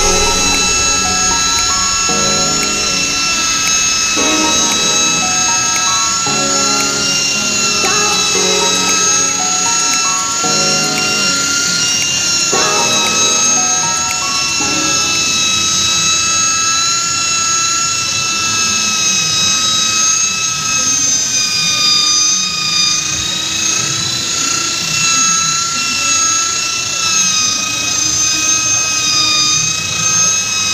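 Electric rotary glass polisher running steadily on windshield glass, a high motor whine that wavers slightly with the load on the pad and dips briefly about twelve seconds in. Background music plays underneath.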